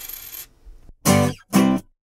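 Closing music jingle: a shimmering, ringing tail fades out in the first half second, then two short, steady notes sound about half a second apart before the sound stops.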